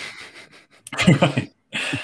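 A man's breathy vocal sounds: a soft exhale, a short voiced sound about a second in, then another breath near the end.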